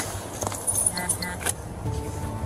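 Keys jingling with light metallic clicks and taps as objects are handled, with a sharp click about one and a half seconds in.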